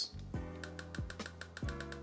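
Olympus (OM System) E-M1X firing a focus-bracketing burst on its faster setting: a rapid, even run of shutter clicks from a single press of the button, over background music.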